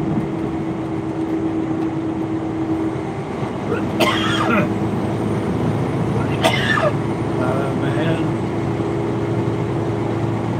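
Big-rig cab noise while cruising on the highway: a steady engine drone and road noise. Brief snatches of a voice cut in about four and six and a half seconds in.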